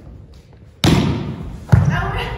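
A volleyball spiked with a sharp hand slap about a second in, then a heavier thud as the ball lands, both echoing in the gym hall.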